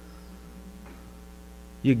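Steady low electrical mains hum through a pause in speech, with a man's voice starting a word near the end.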